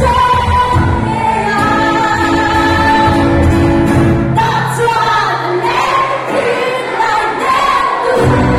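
A live band playing amplified in a hall, with vocals over electric guitars, bass and drums. About halfway through the bass and drums drop out, leaving the voices and guitar, and the full band comes back in at the end.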